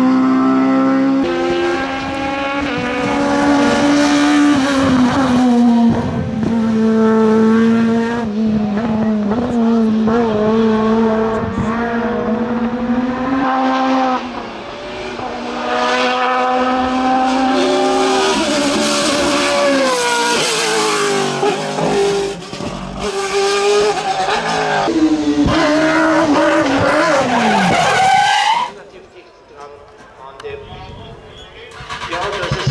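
Racing car engines revving hard under acceleration, the pitch climbing and dropping with each gear change, one car after another with abrupt cuts between them.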